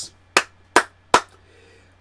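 Three sharp hand claps, evenly spaced about 0.4 seconds apart.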